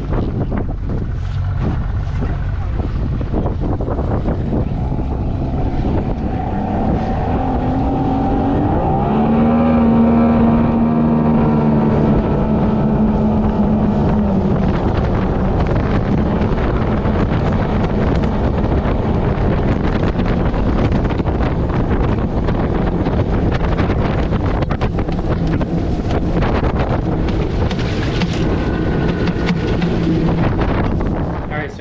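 Small boat's outboard motor running at speed, with wind buffeting the microphone. A few seconds in the motor's pitch rises as it speeds up, then holds steady.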